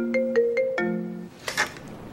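Smartphone ringtone: a quick melody of short notes that stops about a second and a quarter in, followed by a short burst of noise.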